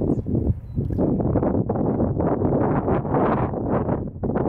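Wind buffeting the microphone: a loud, gusty rumble that rises and falls.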